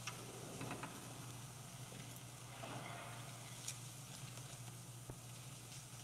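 Quiet church room tone: a steady low hum with a few faint, scattered clicks and rustles.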